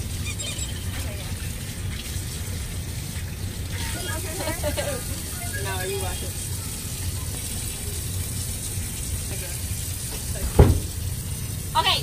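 Tap water running steadily into a utility sink, with quiet voices partway through and a single sharp thump near the end.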